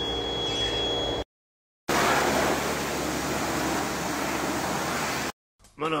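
A steady hum with a thin high whine under the lifted car stops about a second in. After a short gap comes an even hiss of water spraying from a car-wash hose for about three and a half seconds, which cuts off suddenly near the end.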